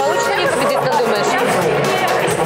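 Chatter of many voices talking at once, with no single clear speaker.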